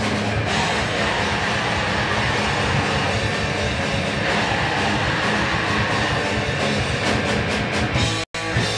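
A punk rock band playing live, loud and dense, with electric guitar and drum kit.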